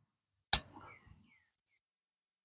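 A golf club striking the ball on a chip shot: a single sharp click about half a second in.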